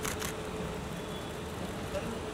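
Steady low street noise of a car running and traffic, with a few brief clicks at the start and faint voices.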